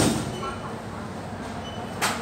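Luggage thumping on the X-ray baggage scanner's conveyor: one sharp thump at the start and another at the end, over a steady rumble.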